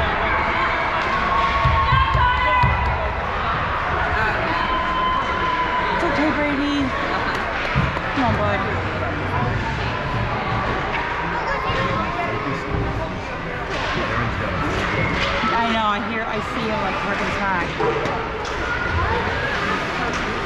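Youth ice hockey game ambience: indistinct voices of spectators and players across the rink, with occasional sharp knocks of sticks and puck on the ice and boards.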